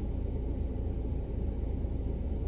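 Steady low rumble of a car idling, heard inside its cabin, with a faint even hiss above it.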